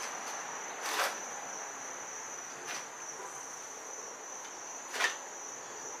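A compound bow being drawn back to full draw, heard as a few soft brief rustles and clicks about a second in and near the end, over a steady high-pitched whine.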